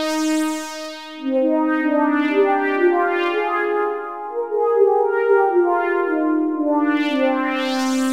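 Syntronik's 'A Deep Sweeper' synth pad, three detuned sawtooth oscillators through a filter, playing slow overlapping chords. The tone brightens near the start and again near the end as the filter opens.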